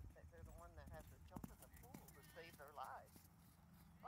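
Faint hoofbeats of a horse moving over sand arena footing, with a person talking quietly.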